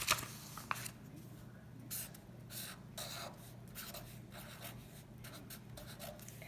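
Marker pen writing on lined notebook paper: a run of short, faint, irregular scratching strokes as numbers and a triangle are drawn.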